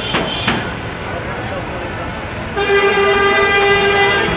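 Busy street traffic and crowd chatter, with two sharp knocks just at the start; then, about two and a half seconds in, a vehicle horn sounds one steady, held note for about a second and a half, the loudest sound here.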